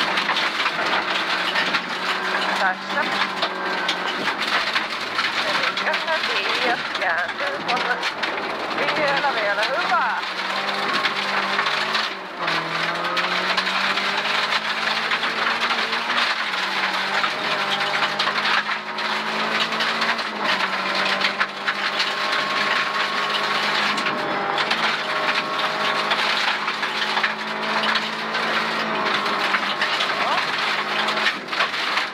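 Rally car engine heard from inside the cabin, running hard on a gravel stage, its pitch stepping up and down with gear changes and throttle. Gravel hisses and stones click against the underbody throughout.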